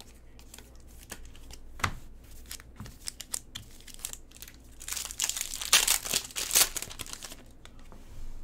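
Foil trading-card pack wrappers and plastic crinkling in the hands as a pack is torn open, with scattered crackles that grow into a dense burst of crinkling about five seconds in.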